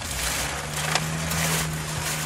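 Shopping items and bags being handled, with a steady low hum that starts about half a second in.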